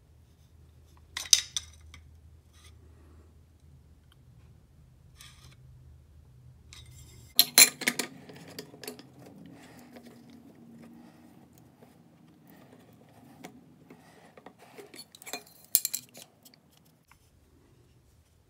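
Metal clinks and clicks of a chisel and a Veritas honing guide being handled and seated against the guide's angle-setting jig. There are sharp clinks about a second in, a denser cluster near the middle, and another few near the end.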